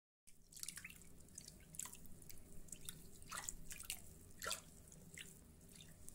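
Faint, irregular drips and plops of water, a few scattered drops each second, some with a quick fall in pitch.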